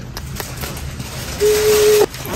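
Newborn baby's thin cry: soft hiss at first, then about one and a half seconds in a single short held note.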